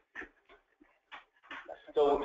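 Faint, broken-up fragments of speech in short separate bits, with loud speech starting again at the very end.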